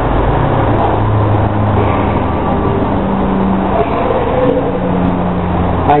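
Steady background noise with a low hum that shifts in pitch now and then.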